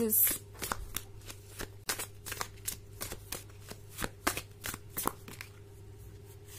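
A deck of oracle cards being shuffled by hand: a string of quick, irregular card snaps and flicks, about three a second, thinning out about five seconds in.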